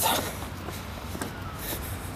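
Footsteps and light shuffling on wet paving stones over a steady outdoor hiss.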